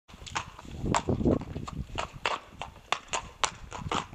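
A pony's hooves clip-clopping on paving stones, sharp strikes about three a second.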